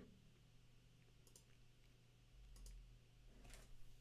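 Near silence with a faint steady hum and a few faint computer mouse clicks, spread out about a second apart, as a program is launched from a menu.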